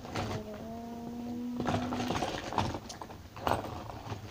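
A child humming one long steady note with closed lips for about two seconds, followed by a few light knocks and rustles of handling.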